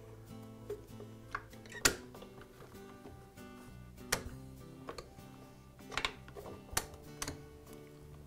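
Quiet background music with about seven sharp clicks and knocks, the loudest about two seconds in: the Graco paint sprayer's yoke rods and yoke being pressed into place on the pump.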